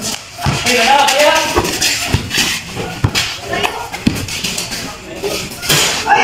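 Players and onlookers calling out during a pickup basketball game, with scattered thuds of the ball bouncing on the concrete court.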